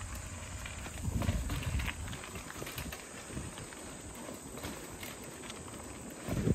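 Mountain bike rolling over a dirt trail, with scattered clicks and rattles from the bike and a low rumble about a second in.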